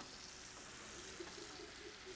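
Breaded food frying in a pan, sizzling faintly and steadily.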